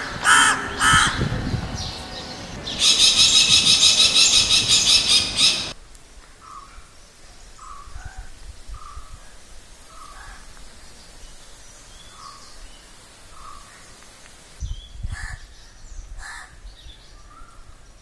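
Crows cawing loudly through the first six seconds, including a long run of rapid harsh calls, then fainter scattered chirps of small birds.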